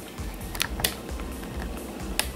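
A few light clicks and taps of small plastic-and-cardboard toy packages being handled on a tabletop, two of them sharper about half a second and just under a second in.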